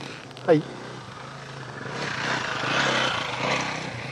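Dirt bike engine revving as it climbs a muddy hill. The sound builds from about a second and a half in, is loudest in the middle, and eases slightly near the end.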